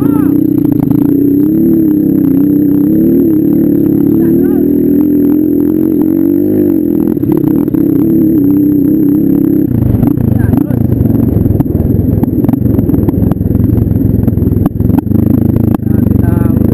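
Dirt bike engine running at steady revs close to the microphone. About ten seconds in, the pitch drops and the sound turns rougher, with rattles and knocks as the bike goes over the rough track.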